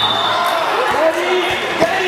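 A handball bouncing on a sports-hall floor, three bounces in the second half, the last the loudest, under girls' voices calling out across the hall.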